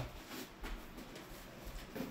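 Quiet room with faint light taps and rustles of a cardboard box being folded by hand.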